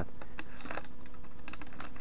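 Light footsteps through dry dead grass and bark-chip mulch: scattered, irregular small clicks and crackles.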